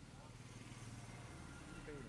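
Faint background: a low steady hum, with faint voices near the end.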